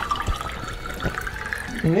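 Vodka poured from a bottle into a small shot glass, the pitch of the pour rising steadily as the glass fills.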